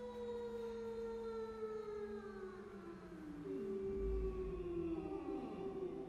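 Chamber choir holding sustained notes that slide slowly downward in pitch, one voice after another, in a long church reverberation, with a brief low rumble about four seconds in.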